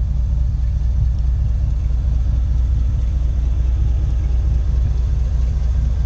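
A swapped-in 2017 GM Gen V V8 idling in a 2004 Jeep Wrangler LJ: a steady, even low rumble.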